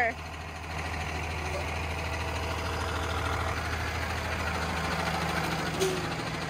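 School bus engine idling steadily, a low even hum.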